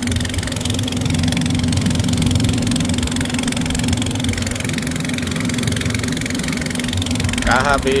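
Small wooden passenger boat's engine running steadily under way, a constant low hum with a rush of water and wind over it. A voice briefly speaks near the end.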